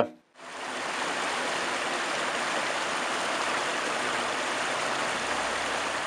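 Steady rush of a rocky river, its water grey with mine tailings, churning around boulders; the sound comes up about half a second in.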